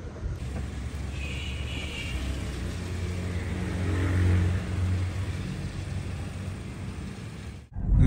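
A car engine running, a low steady rumble that swells and fades around the middle and stops suddenly near the end.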